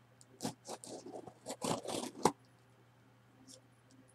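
Scissors slitting the packing tape on a cardboard shipping box: a quick run of scraping, tearing strokes over about two seconds, ending in a sharp click.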